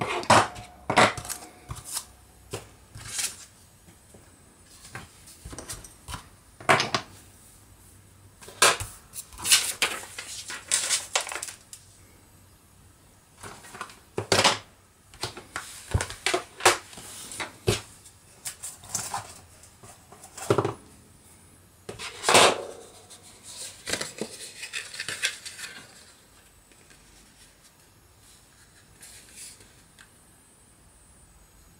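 Acrylic stamp blocks, clear stamps and an ink pad being packed away on a craft table: scattered sharp clicks, taps and knocks of hard plastic with some rubbing and sliding, thinning out in the last few seconds.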